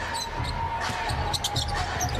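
A basketball being dribbled on a hardwood arena court during live play, with scattered short, sharp sounds from the action on court.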